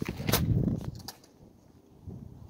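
Handling noise from a phone being moved in the hand: a sharp knock about a third of a second in, a low rumble for about a second, and a couple of light clicks, then it settles.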